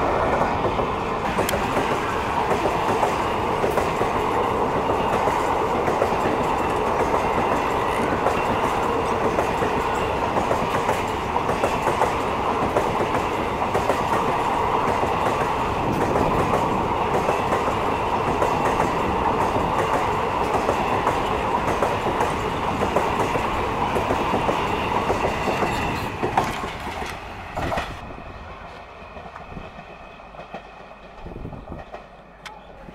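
A passenger train's coaches running past close by at speed: a steady rolling rumble with wheels clicking over the rail joints. The last note of a horn ends about a second in, and the noise falls away near the end.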